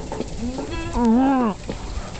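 A man's voice making long, drawn-out moaning groans, each rising and then falling in pitch. There is a short one, then a longer one about a second in, as he strains to get raw fish down.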